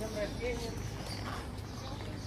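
Faint voices in the background, with footsteps on the paving stones.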